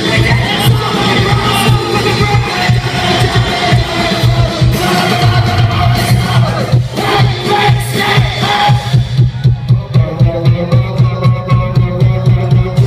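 Loud live punk rock band playing through a club PA, with a crowd shouting along. About nine seconds in, the sound thins to a pulsing beat of about three hits a second.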